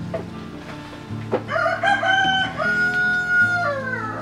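A rooster crowing once: one long call starting about a second and a half in, held for about two seconds and falling in pitch at the end, over quiet background music.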